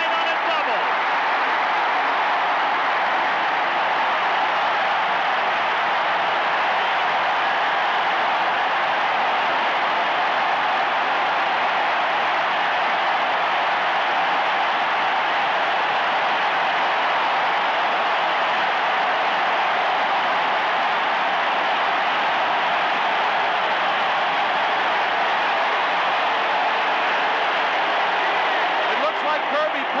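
Large stadium crowd cheering, a loud, steady wall of noise that does not let up.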